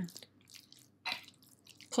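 Spoon stirring a thick, wet mixture of mashed eggplant, ground walnuts and pomegranate seeds in a glass bowl: soft squishing with a few light clicks, the loudest about a second in.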